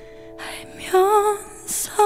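Live ballad with a female solo voice over soft accompaniment of held notes. The first second is a quiet passage, then she sings a held line with vibrato from about a second in.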